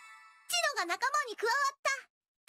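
A bright ringing chime chord fading out, then high-pitched cartoon girls' voices speaking in short, swooping phrases of anime dialogue in Japanese.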